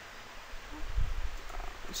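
Low rumble and faint hiss of microphone background noise between spoken sentences, with the rumble swelling briefly about a second in.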